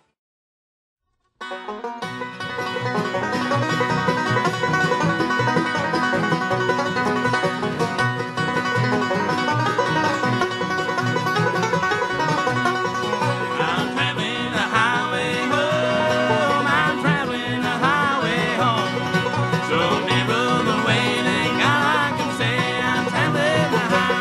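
A bluegrass string band of fiddle, mandolin, five-string banjo, acoustic guitars and upright bass starts playing a bit over a second in after a short silence, with banjo rolls driving a fast tempo. About halfway through, a high, sliding melody line rises above the band.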